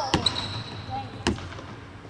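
A basketball bouncing on a hardwood court, two hits about a second apart, echoing in a large empty arena. Near the start there is also a thin, high squeak of sneakers on the floor.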